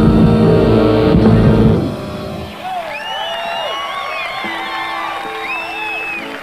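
Live rock band with guitars, drums and keyboards playing the final loud bars of a song, ending about two seconds in. An audience then cheers, with several loud rising-and-falling whistles.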